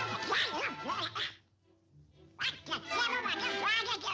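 Donald Duck's squawking, quacking cartoon voice in two excited outbursts, with a short break about a second and a half in. Background music plays underneath.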